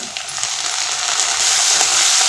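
Chopped tomato, onion and green chilli sizzling in hot oil in a kadai, the hiss growing louder through the second half, with light scrapes of a wooden spatula stirring.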